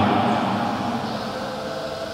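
A man's chanted recitation dying away in a reverberant hall during the first second or so, leaving a steady low room noise.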